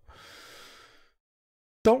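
A man's quick, audible in-breath at the microphone, a soft hiss lasting about a second, followed by a short silence before speech resumes near the end.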